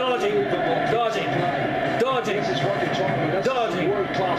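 A man's voice talking throughout, with no other sound standing out.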